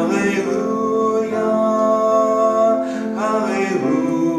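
A man singing a slow solo song to his own piano accompaniment, holding long notes.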